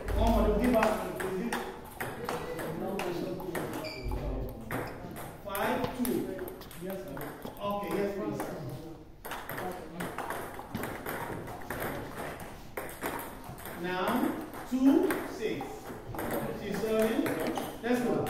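Table tennis balls clicking off bats and tables in rallies at several tables at once, over a hall full of voices.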